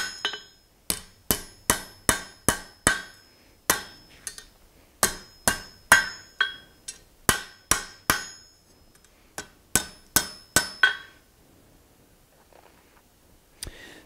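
Hand hammer striking red-hot steel on an anvil, about two to three blows a second in short runs, each with a brief metallic ring. The blows stop about eleven seconds in.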